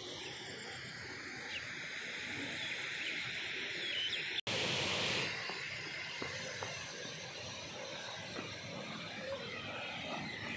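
Steady outdoor background hiss with insects chirring through the first half. The sound drops out for an instant about four and a half seconds in, then carries on as a steady rushing noise with a few faint taps.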